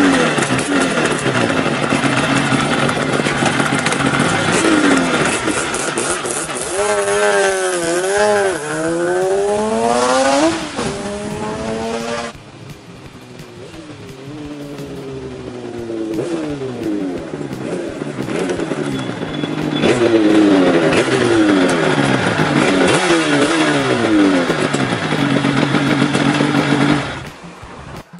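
Yamaha RD500LC's water-cooled V4 two-stroke engine accelerating hard through the gears, its pitch climbing and dropping back at each shift. It fades about halfway through, then builds again with more rising shifts near the end.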